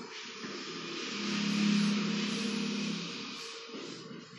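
A motor vehicle passing by, its engine sound swelling to a peak about two seconds in and then fading away, over a steady hiss.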